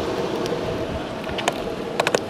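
Steady rolling rush of longboard wheels on asphalt mixed with wind on the microphone, with a couple of sharp clicks from the board near the end.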